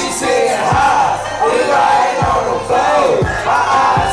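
Live hip hop performance: rappers shouting lyrics into microphones over a loud beat with deep bass hits, mixed with crowd noise.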